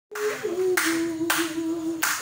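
Audience clapping while a voice holds one long note that dips slightly about half a second in.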